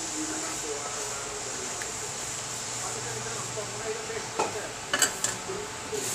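A spatula stirring thin coconut-milk sauce in a pan over a steady hiss, with a few sharp clinks of the spatula against the pan about four to five seconds in.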